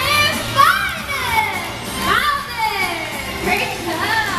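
Children in an audience squealing and shouting excitedly, several high rising-and-falling cries one after another.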